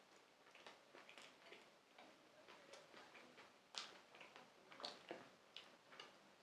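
Faint close-up chewing of a bite of soft-crust chicken pizza: scattered soft mouth clicks and smacks, a few a little louder about four and five seconds in.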